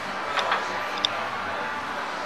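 Outdoor ambience of a crowd standing silent for a minute's silence: a steady background hum, with a few faint high clicks.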